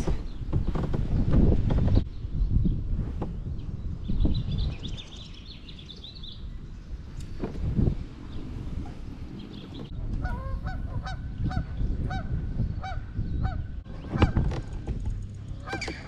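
Geese honking in a repeated series of calls, about two a second, through the second half. Earlier there is a small bird's high chirping trill over a low rumble.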